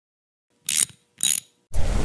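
Logo sound effect: two short mechanical ratchet-like clicks about half a second apart, then a rushing noise with low rumble that begins near the end.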